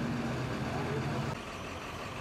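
A truck engine idling with a steady low hum. The hum drops a little in level about a second and a half in.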